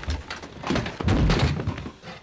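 Heavy thuds and crashes of a staged film fight as bodies slam into a wall, one burst at the start and a longer run of blows near the middle.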